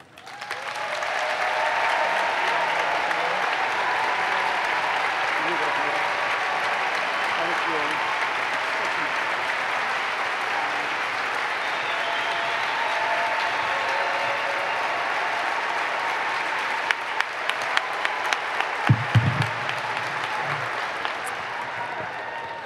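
An audience applauding steadily, with faint voices mixed in. The applause swells up within the first second and eases a little toward the end. Near the end there are a few sharp knocks and one low thump.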